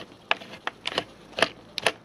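Screwdriver turning out the screw at the top of a threaded brass shaft that passes through the tape recorder's chassis, making a run of small, irregular clicks.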